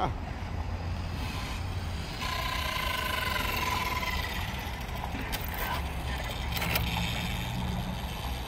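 Electric motor of a Kyosho GT2-e RC car whining as the car drives on asphalt. The high whine starts about two seconds in, holds for a couple of seconds and sinks slightly as it eases off, over a low rumble.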